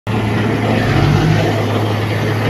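Komatsu D31P crawler bulldozer's diesel engine running steadily under load as it pushes soil.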